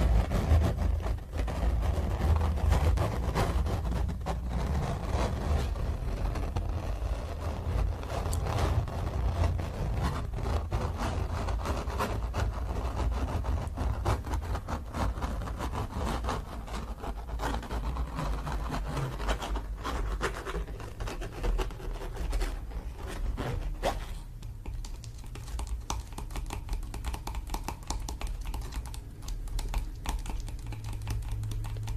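Fingernails scratching rapidly over a stretched canvas print held right at the microphone: a dense run of small scrapes and clicks with a low handling rumble under it, a little softer in the last few seconds.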